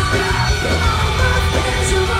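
Live post-hardcore band playing loudly: electric guitars, bass and drums with two vocalists singing and yelling over them.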